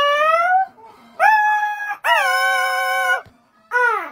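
A child's voice making long, high-pitched wailing cries with no words: one rising, two held steady for about a second each, and a short falling one near the end.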